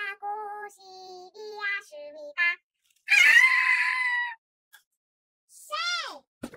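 A voice sings or calls a string of short, steady notes that step up and down in pitch, then lets out a loud scream lasting about a second, about three seconds in.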